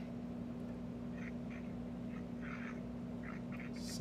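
Steady low hum from the call's audio line, with several faint, short higher-pitched sounds at irregular moments through it.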